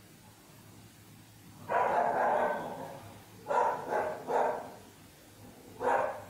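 A dog barking: a burst of barking about two seconds in, then two short barks in quick succession.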